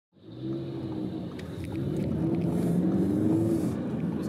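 Car engine running at idle, a steady low hum that fades in over the first half second, with its pitch wavering slightly and a few faint clicks.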